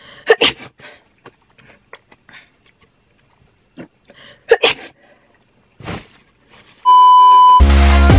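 Light clicks and knocks of makeup products and their containers being picked up and set down, with two louder clatters. Near the end a short steady beep sounds, then loud electronic music with a heavy beat cuts in.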